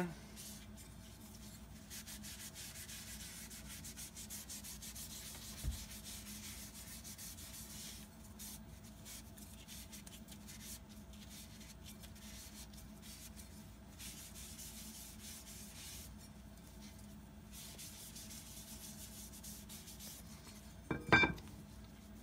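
Faint cloth rubbing as sandblasted steel plates are wiped down with acetone to degrease them, a soft, uneven wiping and scrubbing noise. A dull thump about six seconds in, and a short sharp sound near the end.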